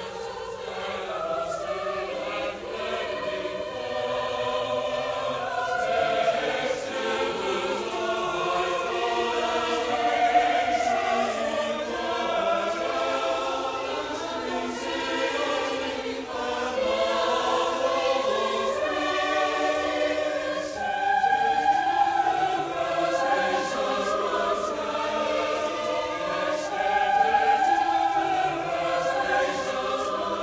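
Mixed choir of men and women singing in parts, swelling louder a few times. The old recording has its highest frequencies cut off.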